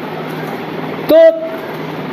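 Steady background hiss with a low hum. About a second in, a man's voice holds one drawn-out syllable for about half a second.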